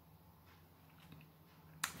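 Near silence: faint room tone with a few faint clicks, then a man's voice starts right at the end.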